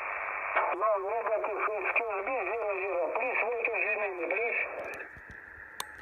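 A single-sideband voice on the 20-metre shortwave band, heard through a Yaesu FT-817's speaker: a distant station replying, thin and narrow in tone over a bed of static hiss, the voice wavering in pitch. Near the end it drops away to hiss alone.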